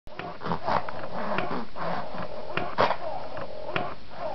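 A baby laughing in a run of short, irregular bursts.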